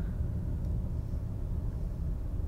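Steady low rumble of background noise with no speech or music.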